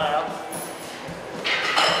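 A faint light metallic clink from a steel barbell being gripped on the floor about half a second in. Near the end comes a loud exclamation of encouragement.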